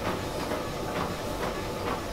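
Treadmill running, its belt and motor making a steady noise with faint footfalls about twice a second.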